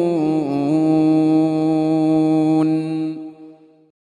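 Male Quran reciter's voice holding one long melodic note, the drawn-out final syllable at the end of a verse. The pitch slides down a little twice at the start and is then held steady before fading out over the last second.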